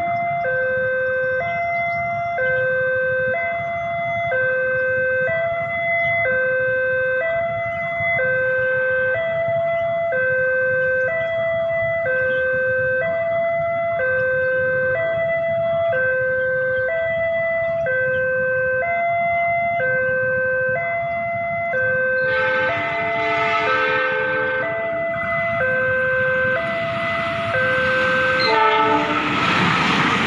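Railway level-crossing electronic warning alarm sounding two alternating tones, changing about once a second. About 22 s in, a diesel locomotive's horn sounds for a few seconds. Near the end the rumble of the approaching train swells.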